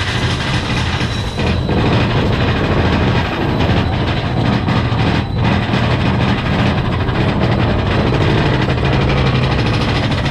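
Big Thunder Mountain mine-train roller coaster cars running on their steel track, heard from on board as a steady, loud rumble and rattle.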